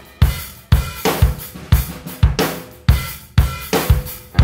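Drum kit playing alone: kick drum struck together with cymbal crashes about twice a second, each hit ringing out before the next.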